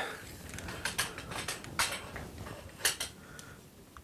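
A light stand being raised and its flash-and-reflector tilt bracket adjusted: light mechanical rattling with three sharp clicks about a second apart.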